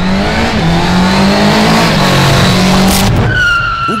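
A motor vehicle's engine running loudly with skidding tyre noise, cutting off about three seconds in, followed by a high drawn-out tone near the end.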